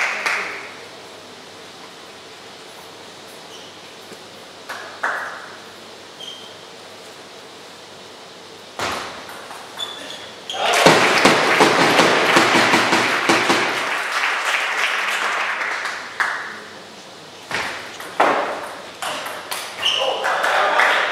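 Table tennis ball ticking off rackets and the table in a rally, starting with a serve about nine seconds in and continuing at a steady back-and-forth pace. A loud swell of crowd noise in a large hall rises over the rally about two seconds after the serve and fades a few seconds later. Fading applause is heard at the very start.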